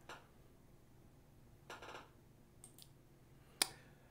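A few faint clicks and short rustles over a faint low hum, with a sharper click near the end.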